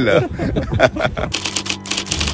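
Typewriter key-clacking sound effect, a rapid run of clicks that starts a little over a second in, after a moment of voices.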